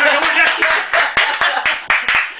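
Hands clapping quickly and fairly evenly, several claps a second: applause for a just-finished sung guitar song, with voices over it.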